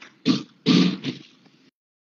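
A person clearing their throat twice, a short one and then a longer one, over a voice-chat line. The sound cuts off abruptly shortly before the end.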